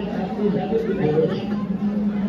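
Overlapping voices: a group of men chatting, with a steady low hum beneath.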